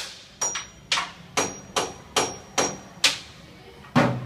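A drum being hit with drumsticks by a toddler, a steady string of single strokes about two to two and a half a second, some with a short high ring.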